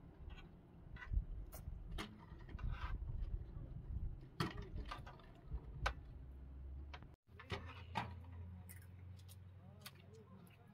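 Eating sounds: scattered sharp clinks of spoons on dishes, mixed with low murmured voices. The sound cuts out briefly a little after seven seconds.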